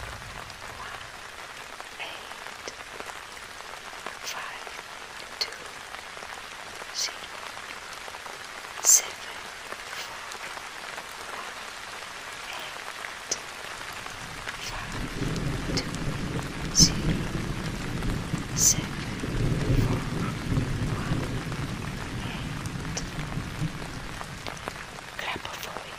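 Steady rain with scattered sharp drip-like ticks. A low thunder rumble swells in past the middle and keeps on.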